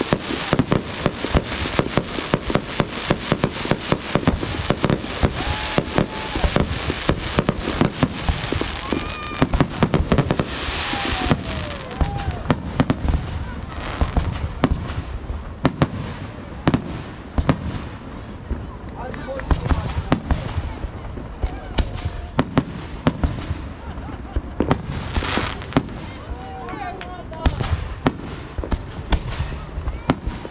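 Fireworks display: aerial shells launching and bursting in a rapid, overlapping string of bangs and crackles, densest in the first ten seconds or so, then thinning to scattered booms.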